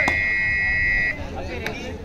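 A referee's whistle blown once, a steady high-pitched note held for about a second and cut off sharply, over faint voices of the crowd.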